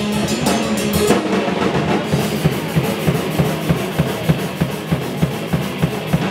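Hardcore punk band playing live, loud, with the drum kit to the fore; from about two seconds in the drums drive a fast, even beat.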